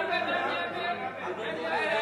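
Several voices talking over one another in a continuous, overlapping chatter.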